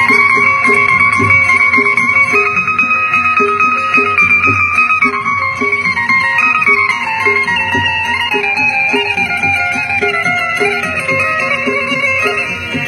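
Balochi folk music played live: a long-held melody that steps slowly up and down in pitch, over a steady repeating beat, with plucked and bowed string sounds.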